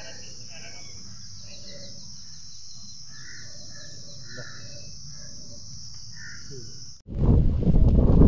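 Steady, high-pitched insect drone with a few short chirps over it. It cuts off abruptly about seven seconds in, and a louder rush of wind and movement noise follows.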